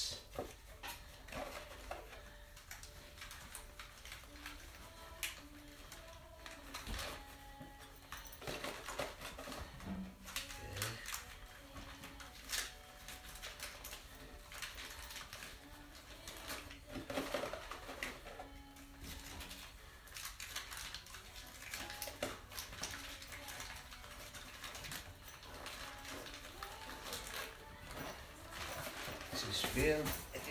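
Cardboard supplement boxes being handled, opened and emptied by hand: scattered rustles, crinkles and light clicks of packaging.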